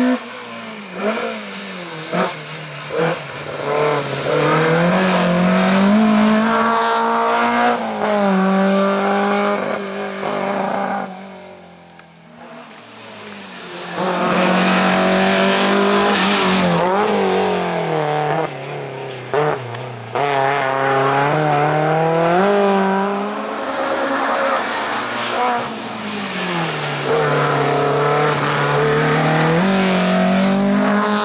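Hatchback race car's engine revved hard, its pitch climbing and dropping again and again as it accelerates and lifts between slalom cones. The sound fades away briefly near the middle, then comes back just as loud.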